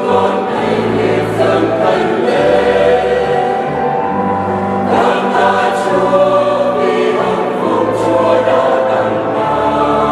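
Mixed choir of women's and men's voices singing a Vietnamese Catholic hymn in parts, with sustained low notes underneath.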